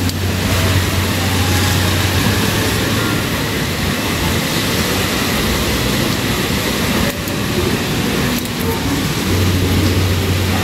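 Steady, even rush of rain falling, with a low hum underneath for the first couple of seconds and again near the end.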